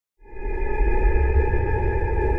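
Logo intro music: a sustained electronic drone with a deep bass rumble under several steady high tones, swelling in within the first half second after a moment of silence.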